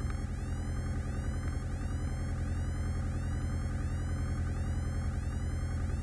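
Piper PA-28 Warrior's four-cylinder engine running at low power while the plane lines up on the runway, heard through the cockpit intercom as a steady low hum. A high chirp repeats about twice a second over it.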